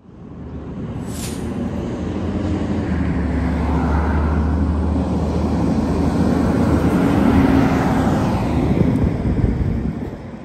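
Road traffic: a motor vehicle's engine and tyres passing on the street, building steadily louder to a peak about seven to eight seconds in, then falling away.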